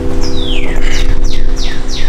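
A bird calling over and over, a quick series of falling chirps about three a second, over loud steady background noise, while a held electronic keyboard chord fades out.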